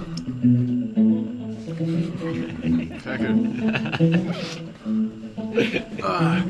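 Guitar plucked in a slow line of single low notes, each note ringing briefly before the next.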